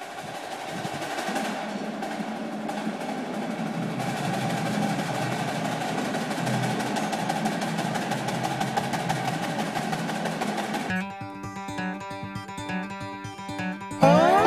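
A snare drum roll that swells for about ten seconds, then gives way to a quieter, sparser drum rhythm near the end.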